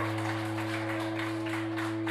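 Live rock band in a quiet passage: guitar and bass notes held and ringing steadily, with light quick taps several times a second.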